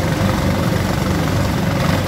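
A wooden river boat's engine running steadily under way, its sound mostly low-pitched and even throughout.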